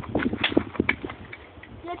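A handful of short, sharp knocks and clicks, about five in two seconds, from hard objects striking each other.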